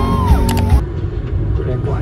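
Live concert sound, with heavy bass beats and gliding crowd voices, cuts off abruptly under a second in. It gives way to the steady low rumble of a car on the move, heard from inside the cabin.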